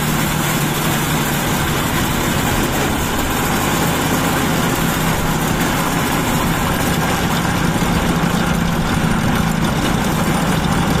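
Homemade steam turbine running steadily, belt-driving a 12-volt DC motor used as a generator: a loud, even rush of steam with a steady low hum underneath.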